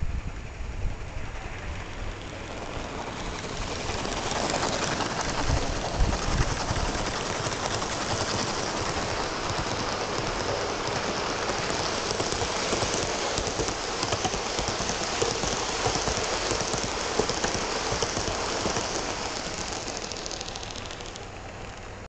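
Gauge One model coaches rolling on garden-railway track: a steady noise of many small wheels on the rails. It builds about four seconds in, holds as the long train passes close by, and fades over the last few seconds as the train draws away.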